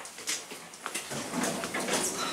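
Hydraulic elevator's door and drive machinery starting up: a few light clicks, then a steady mechanical rush from about a second in.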